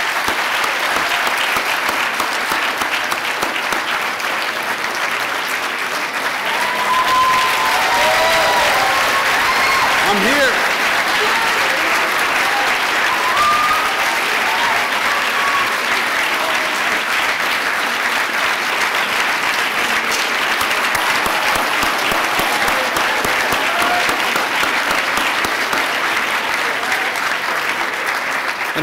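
A large crowd of students applauding and cheering, a steady wall of clapping with a few shouts and whoops rising above it in the middle.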